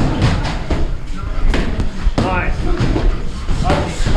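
Boxing sparring: a run of sharp thuds and slaps from gloves striking and feet moving on the ring canvas, with a short shout about two seconds in.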